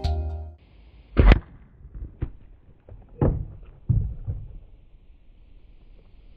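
Background music ending, then one loud thunk about a second in, followed by a few lighter knocks.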